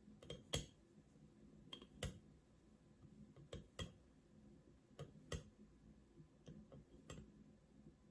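A teaspoon clinking against a glass mason jar as teaspoons of salt are measured and tipped in: light, sharp clicks, often in close pairs, every second or two.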